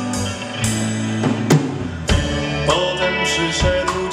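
A live band playing an instrumental passage of a ballad: a drum kit with cymbal strikes over held bass and guitar notes.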